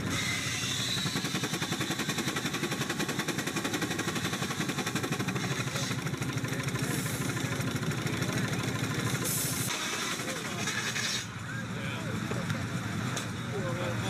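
Antique steam traction engine running, with a fast, even beat from its exhaust and moving parts. After about eleven seconds the beat gives way to voices.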